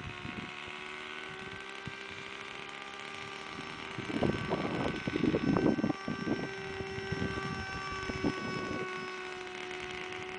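Electric RC flying wing in flight overhead: its brushless outrunner motor turning an 8x6 propeller gives a steady whine with several tones. About four seconds in, there are two seconds of loud, irregular buffeting from wind on the microphone.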